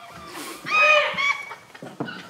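A person's high-pitched vocal squeal in two short pieces, about a second in.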